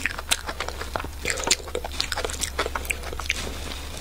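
A person chewing crunchy raw food close to the microphone: irregular crisp crunches and wet mouth sounds, with no speech.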